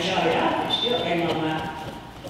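People talking quietly, with indistinct speech that fades near the end.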